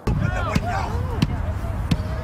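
Shaky phone recording by the water with a heavy low rumble of wind on the microphone. Distant people are shouting and screaming, and three sharp knocks come about half a second apart.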